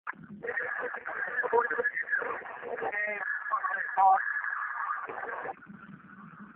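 Indistinct voices talking almost throughout, with a louder call of "stop" about four seconds in.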